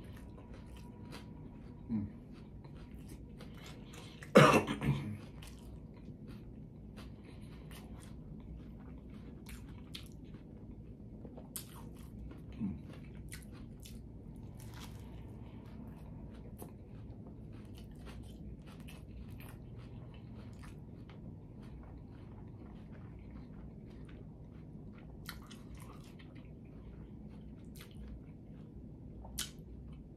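Close-miked chewing of a smash burger taco: soft wet mouth clicks and smacks. There is one loud cough about four seconds in, and lighter throat sounds near two and thirteen seconds.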